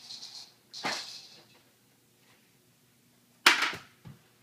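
Hard plastic toy pieces knocking together: a sharp clack a little under a second in and a louder one near the end, with plastic scraping just before the first.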